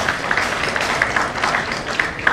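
Audience applauding: many hands clapping together in a dense, steady patter.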